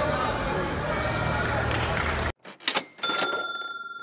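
Arena background of voices and chatter that cuts off abruptly about two seconds in, followed by a few sharp clicks and a single bright bell-like ding, like a typewriter bell, that slowly fades away: an editing sound effect for the title card.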